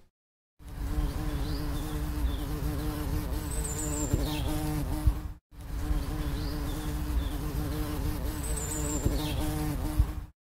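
Bees buzzing in a steady hum at one pitch, starting about half a second in. It breaks off briefly about halfway, then the same short recording plays again.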